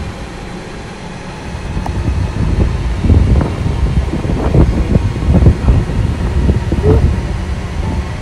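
Wind buffeting the microphone: a low rumble that turns gustier and louder about three seconds in.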